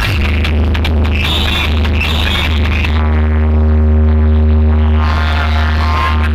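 Loud electronic dance music played over a large competition DJ sound system, with heavy sustained bass. About three seconds in the treble drops away, leaving the bass and held tones for a couple of seconds, and comes back near the end.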